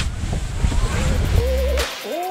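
Wind buffeting the microphone as a rough low rumble, then background music coming in about one and a half seconds in, with a wavering melody over steady bass notes.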